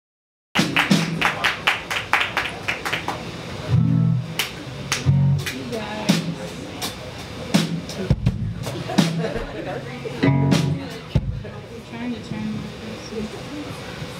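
Live band getting ready on stage: a few loose low guitar notes, tuning and noodling, with sharp taps, a quick run of them in the first few seconds, over crowd chatter in a small club.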